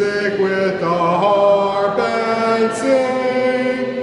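A hymn sung in slow, long-held notes, one phrase running on without a break and stepping between pitches about once a second.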